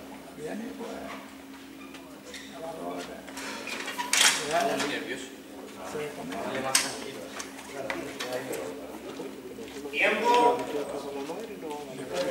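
Indistinct voices talking in an echoing hall, with two sharp knocks partway through over a steady low hum.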